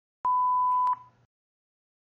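A single electronic beep: one steady, pure high tone about two-thirds of a second long, starting a quarter second in and cut off with a click.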